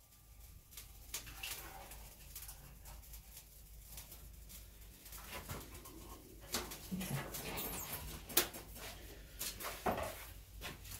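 Scattered clicks and knocks of hands working at a Weber Summit Charcoal kettle grill while a wireless meat thermometer is set up, with a sharper knock near the end as the metal lid is shut. A low steady hum runs underneath.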